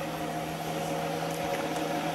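Steady hum of a running magnet-wheel pulse motor, the spinning rotor triggering its coils. The sound is a few constant low tones over a light whir.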